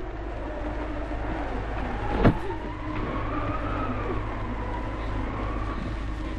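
Old optical film soundtrack: steady hiss and low hum under a faint, slowly wavering drawn-out tone, with a single sharp click a little over two seconds in.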